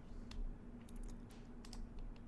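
Faint computer keyboard typing: a handful of scattered key clicks as login details are entered.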